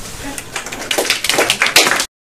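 A few people clapping: scattered claps that thicken into quick, irregular applause about a second in, then cut off abruptly.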